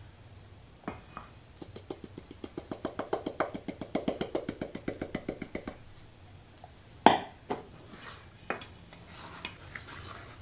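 Flour being shaken from a metal bowl into cake batter: rapid, even tapping, about nine taps a second, lasting about four seconds. A single loud knock follows about seven seconds in.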